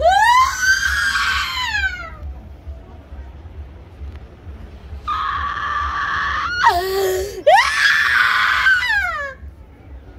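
A woman screaming in a possession trance: one long high cry at the start, pitch rising then sliding down, then after a pause of about three seconds a run of loud wailing cries that shoot up in pitch and slide down again.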